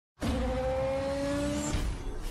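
Car engine revving sound effect for a logo intro: it starts suddenly, the pitch rising slowly, and cuts off shortly before a music sting takes over.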